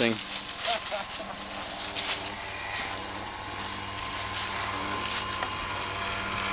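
Footsteps crunching through dry fallen leaves, with light irregular crackles, over a steady low hum.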